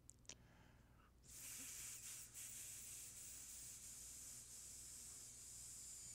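A faint, steady high hiss sets in about a second in and lasts about five seconds, after a single soft click near the start.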